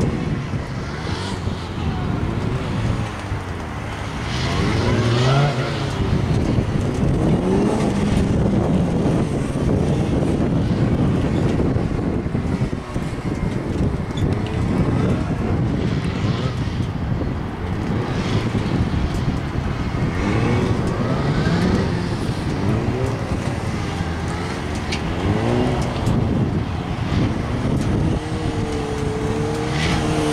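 Suzuki sportbike engine revving up and down over and over in short throttle bursts, its pitch rising and falling as the bike accelerates and slows through tight turns between cones.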